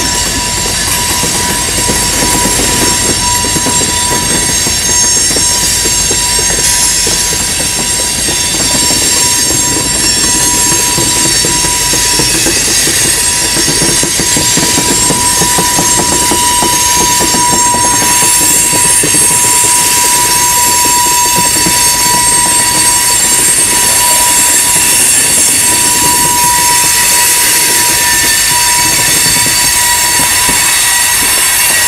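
Freight cars of a long train rolling past on a curve, with a steady rumble of steel wheels on rail. Over it runs a sustained high-pitched wheel squeal from the flanges rubbing in the curve, swelling and fading as the cars go by and growing shriller in the second half.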